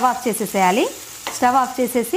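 A voice talking over the sizzle of chopped onions, tomatoes and green chillies frying in oil in a pan, with a short lull in the talk about halfway through.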